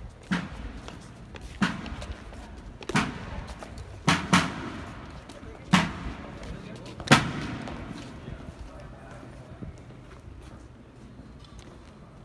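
Military side drum struck in single loud strokes, roughly one every 1.4 seconds, with a quick double stroke about four seconds in, beating the cadence for marching infantry. Each stroke rings on briefly.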